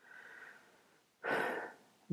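A man's breathing close to the microphone: a faint breath, then a louder, short intake of breath a little over a second in.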